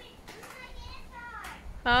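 Faint children's voices calling out, then an adult's voice starting loudly near the end.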